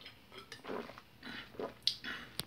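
A man gulping a drink from a bottle: several short, soft swallows.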